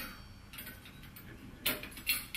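Small metallic clicks of a steel tool prying at the flame spreader on top of a multi-fuel stove's burner, with a sharper click near the end.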